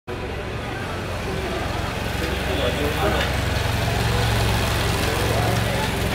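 Police motorcycle engine running at low speed as it rides past, a steady low hum that grows a little louder as it comes close, with passers-by talking.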